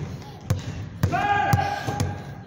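Basketball being dribbled in quick crossovers, bouncing about twice a second. A high, steady squeak runs for most of a second in the middle.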